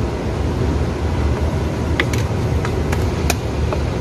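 Steady low rumble of an idling diesel truck engine, with a few sharp light clicks and taps of a spoon and plastic containers in the second half.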